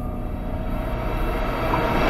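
A low, steady rumble with faint held tones, swelling in the last half second.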